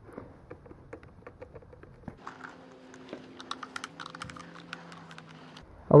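Phillips screwdriver turning screws out of the plastic motor housing of a handheld vacuum cleaner: a run of small, irregular clicks and ticks.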